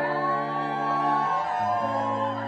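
Live indie electro-pop music: steady held bass notes that shift to a new note about one and a half seconds in, under a sustained higher line that bends gently in pitch.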